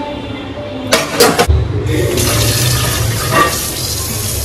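Stainless steel dishes clatter briefly about a second in, then a kitchen tap runs, its stream of water drumming into a non-stick pan.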